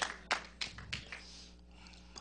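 A few people in the congregation clapping in a steady rhythm, about three claps a second, fading out about a second and a half in.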